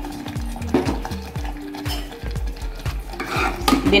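A metal spoon stirring a wet dal and spice mixture in an aluminium pressure cooker, clinking and scraping against the pot, over background music with a steady beat. The sound gets louder near the end.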